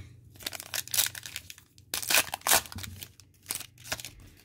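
A foil trading-card pack wrapper being torn open and crinkled by hand, in several short bursts.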